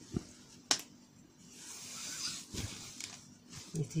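Printed bed-sheet fabric rustling and sliding as it is handled and laid out for measuring, with a knock just after the start and a sharp click a little before one second in.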